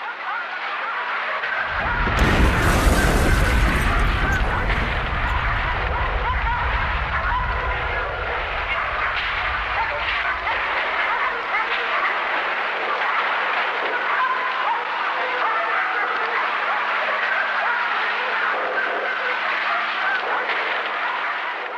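An explosion about two seconds in, its deep rumble dying away over several seconds. It is followed by a steady din of many indistinct voices.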